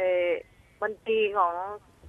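Speech only: a woman talking in Thai over a telephone line, her voice thin and cut off in the highs.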